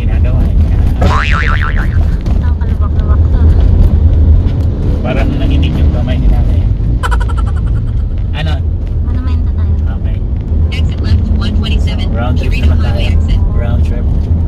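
Steady low rumble of a car's engine and tyres heard from inside the cabin while driving slowly, with brief indistinct voices over it.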